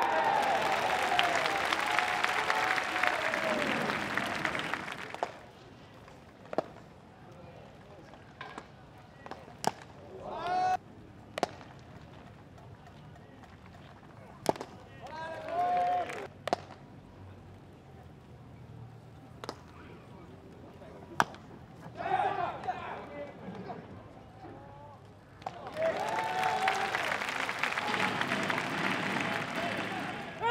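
Live ballpark sound: crowd noise with voices and clapping swelling for the first few seconds and again near the end. In between, a quieter field with about six sharp single cracks of the baseball in play, spaced a few seconds apart, and a few short shouts from the field.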